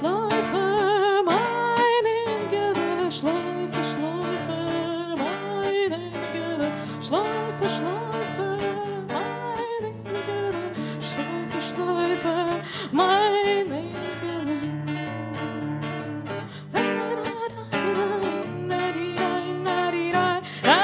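A woman singing a sliding, wavering vocal line with vibrato, accompanied by acoustic guitar.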